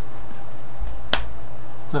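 A single sharp computer-mouse click about halfway through, over a steady electrical hum.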